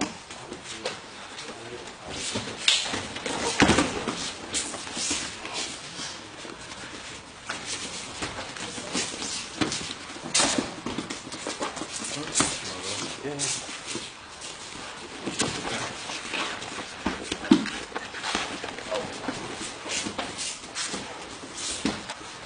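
Jiu-jitsu grapplers rolling on mats: irregular slaps and thuds of hands and bodies, with scuffing, and voices faintly in the background.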